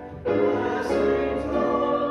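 Congregation singing a hymn with instrumental accompaniment: a short break between phrases right at the start, then sustained sung notes.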